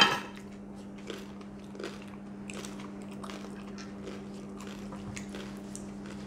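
Close-up chewing of crispy fried pork knuckle crackling: a loud crunching bite right at the start, then irregular crisp crunches as it is chewed. A steady low hum runs underneath.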